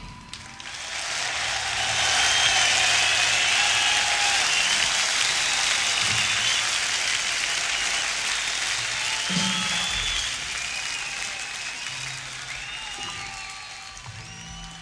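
Concert audience applauding at the end of a rock song, with whistles in the crowd. The applause swells over the first couple of seconds, holds, then slowly dies away over the last few.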